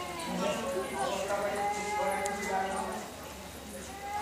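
Indistinct background voices with some drawn-out tones, none of the words clear.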